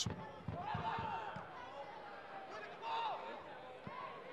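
Faint match-side sound of a football game: distant shouts from players on the pitch, about a second in and again near three seconds, with a few dull thuds of the ball being kicked.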